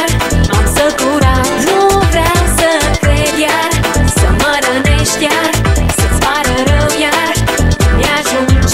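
Early-2000s Romanian dance-pop music with a steady electronic beat and a wavering melodic lead line.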